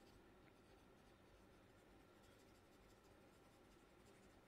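Near silence, with faint scratching of a stylus on a tablet as handwriting is erased and rewritten.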